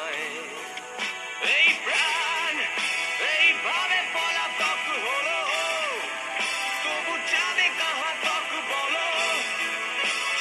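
A song with a singing voice, its melody gliding and wavering over steady instrumental accompaniment.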